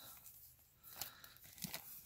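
Clear plastic zip-lock bag crinkling as it is handled, with a few sharper crackles about a second in and near the end.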